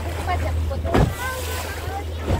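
A boat's motor running steadily under wind and water noise, with one sharp thump about a second in as the hull slams down on a wave.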